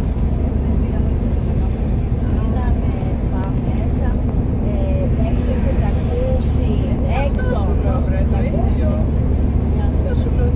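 Steady low rumble of a coach running at motorway speed, heard from inside the cabin, with people's voices talking over it.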